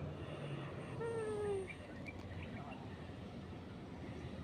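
Faint outdoor ambience with a low, even rush of wind on the microphone. About a second in, a short pitched sound with overtones falls slightly in pitch over half a second.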